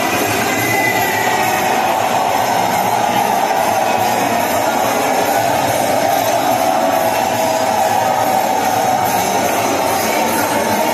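Temple kirtan music during an arati: a loud, dense, steady wash of sound with no pauses or single standout hits.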